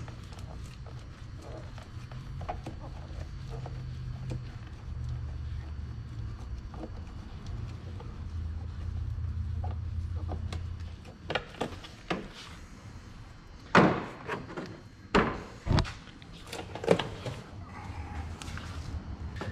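Hard plastic knocks and clunks, several of them loud, in the second half as a Chevy Express air intake box is worked loose and lifted out of the engine bay. A low steady hum runs underneath in the first half.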